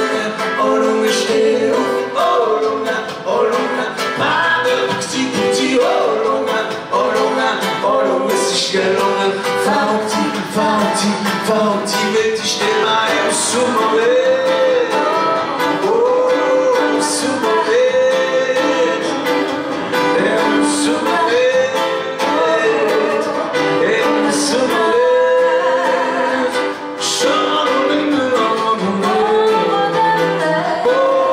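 Live acoustic band playing a song: strummed acoustic guitar with piano, and singing voices carrying the melody.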